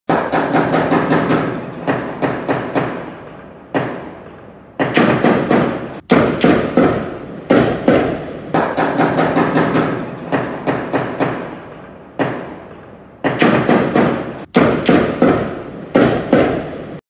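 Semi-automatic rifle gunfire: rapid shots, several a second, in bursts separated by short pauses. Each shot is followed by a long echo.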